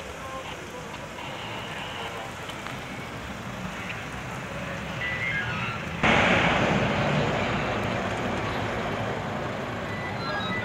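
Street ambience with scattered faint voices; about six seconds in it jumps abruptly to a much louder, even rushing road-traffic noise that slowly eases off.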